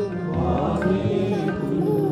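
Sikh kirtan: harmonium playing sustained chords with a sung chant over it and occasional tabla strokes.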